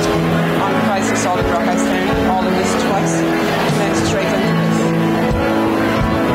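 Church worship band singing a hymn: several voices in harmony over piano, acoustic guitar and drums, with a drum or cymbal stroke about every second.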